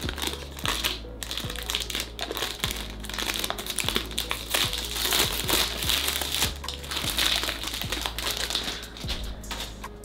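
Clear cellophane wrap being torn and crinkled off a cardboard perfume box, with dense, irregular crackling that is busiest in the middle.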